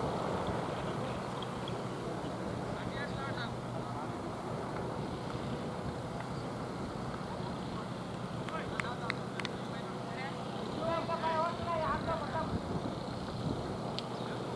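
Open-air ambience with wind on the microphone, distant voices and a faint steady low hum. A few sharp clicks come about nine seconds in, and a louder wavering call follows around eleven to twelve seconds.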